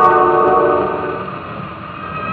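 A 1928 Victor 78 rpm record of a concert orchestra playing on a Victrola talking machine with a Tungs-Tone stylus. A held orchestral chord fades about a second in to a quieter passage.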